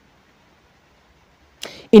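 Near silence, broken about one and a half seconds in by a short hiss just before a man's voice starts again.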